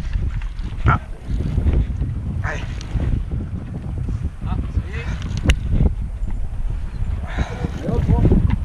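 Wind buffeting the microphone over a low, steady rumble from a boat at sea, with brief snatches of voices. A single sharp click comes about five and a half seconds in.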